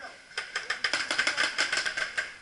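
Paintball marker firing rapidly: a fast, uneven string of sharp pops starting about a third of a second in.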